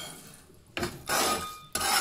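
Metal spatula scraping salt-roasted pumpkin seeds across a stainless steel pan, scooping them into a sieve to separate out the salt: two long scraping strokes, starting about three-quarters of a second in.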